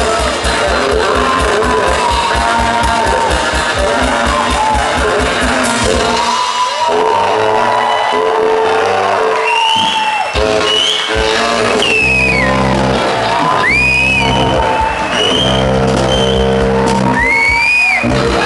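Live Bavarian brass-band music from a large saxophone, tuba and drums: a fast beat for the first six seconds, then long held notes with short breaks. High whooping shouts rise and fall over the music in the second half.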